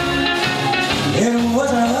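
Live blues band playing: electric guitar with upright double bass and drums, the guitar playing a sliding, bending line.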